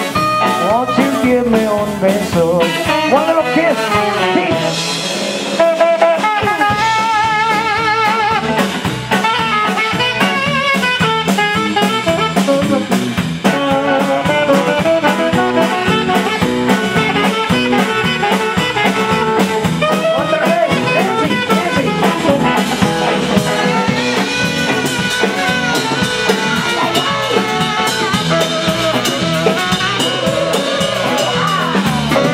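Live blues band playing an instrumental passage, a tenor saxophone carrying the melody with a wavering vibrato over drums, electric bass and guitar.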